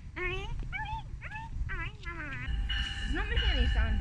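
High, wavering vocal whines in the first half. Then, about two and a half seconds in, an approaching GO Transit commuter train sounds its horn in a steady chord over a rising low rumble.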